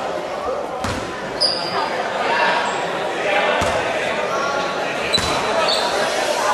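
A basketball bouncing on the indoor court floor: three separate thuds spread a second or more apart, while the ball is handled at the free-throw line. Voices echo through the hall throughout, with a few brief high squeaks.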